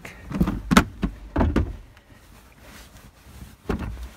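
Rear bench seat cushion and seat lid of a small travel trailer being lifted: a few thumps and knocks in the first second and a half, then another knock near the end.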